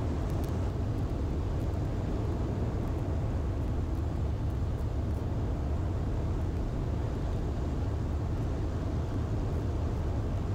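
The 1948 Ercoupe 415-E's four-cylinder Continental O-200 engine and propeller drone steadily in level flight.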